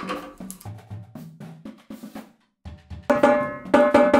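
Light stick taps on a marching tenor drum's freshly fitted 12-inch head, struck around the rim near each tuning lug in turn to compare pitch while tuning. About three seconds in, a run of louder strokes on the tenors, each ringing at a clear pitch.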